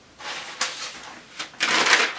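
Sheets of paper rustling as they are picked up and handled, in short bursts and loudest near the end.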